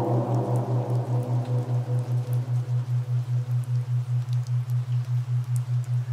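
A low steady tone pulsing evenly about five to six times a second, the kind of isochronic-style pulse laid under subliminal tracks, with faint rain patter beneath it. A fading wash of ambient music dies away in the first two seconds.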